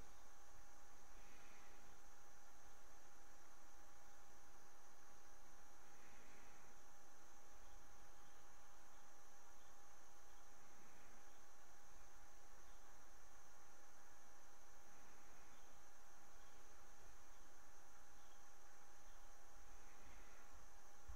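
Quiet room tone: a steady low hiss from the microphone with a faint constant electrical hum and a thin high whine, and no other distinct sound.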